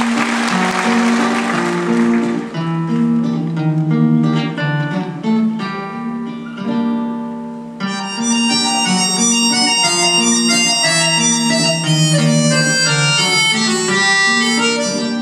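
Instrumental introduction to a song: a band plays steady plucked notes, and a brighter, higher melody line comes in sharply about eight seconds in. A wash of noise fades over the first two seconds.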